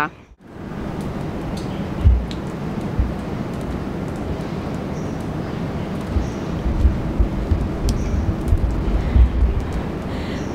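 Steady outdoor noise with irregular low rumbling gusts, typical of wind buffeting the microphone of a moving handheld camera.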